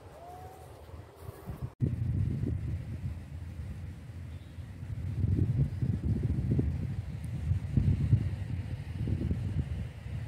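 Wind buffeting the microphone: a gusting low rumble that cuts out briefly near two seconds in, then comes back stronger and swells in waves through the rest.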